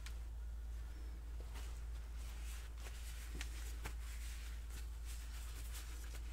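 Room tone: a steady low hum with a few faint, scattered clicks.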